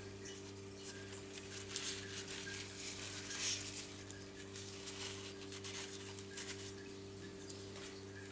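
A steady low hum, with faint, irregular soft ticks and pattering over it.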